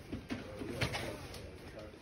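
Cotton linens and a cardboard box rustling as they are handled, with a few sharper rustles about a second in.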